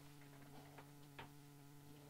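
Near silence: a faint steady hum with a few faint ticks, the clearest about a second in.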